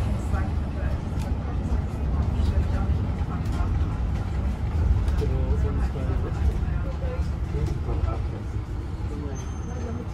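Interior of a moving shuttle bus: the bus runs along the road with a steady low rumble and a few faint clicks and rattles.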